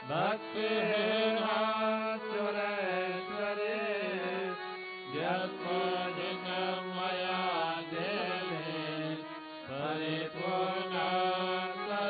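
Male priests chanting Hindu mantras of praise together in a sung, melodic style. The chant comes in three long phrases, each starting about five seconds after the last.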